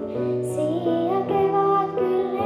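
A young girl singing a melody into a handheld microphone over instrumental accompaniment, her voice gliding between held notes.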